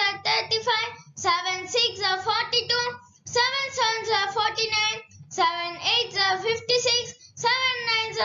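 A child's voice chanting the seven times table in a sing-song, one line per phrase with short pauses between, from seven fives are thirty-five to seven nines are sixty-three.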